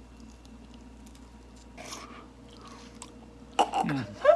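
Faint chewing and biting at a piece of tough grilled beef intestine that does not bite through easily, with small wet clicks and a short burst of mouth noise about halfway. Near the end a sudden loud vocal outburst with a falling pitch cuts in.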